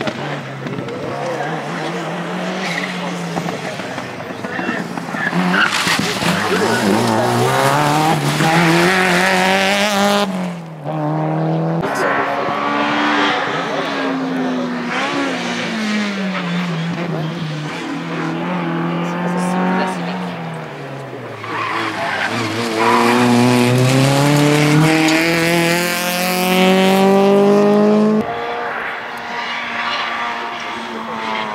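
Rally car engines at full throttle on a special stage, one car after another: each climbs in pitch through the revs and drops back sharply at every gear change.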